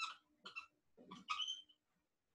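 Dry-erase marker squeaking on a whiteboard while writing: a few short, faint squeaky strokes.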